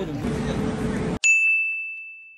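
A single bright ding sound effect, struck once about a second in and ringing as it fades, over otherwise dead silence. Before it, indoor hall noise with a low steady hum, which cuts off abruptly as the ding starts.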